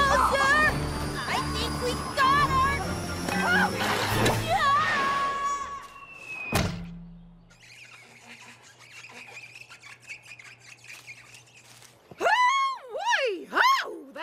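Cartoon soundtrack: background music under a character's grunts and exclamations, then a sudden crash about halfway through. Quieter music follows, and a character's voice comes in loudly near the end.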